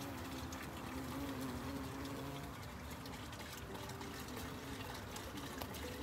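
Steady hiss of water being poured or sprayed while plants are watered, with a faint wavering buzz of bumblebees working lavender flowers.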